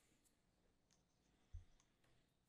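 Near silence: room tone with a few faint clicks and one short, deep thump about one and a half seconds in.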